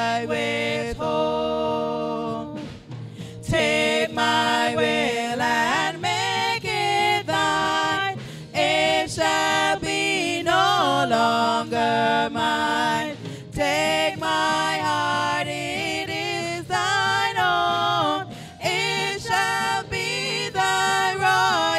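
A small group of women singing a hymn together in harmony through handheld microphones, holding long notes, with short pauses between phrases, the longest about three seconds in.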